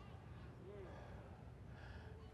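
Near silence: faint room tone with soft breathing.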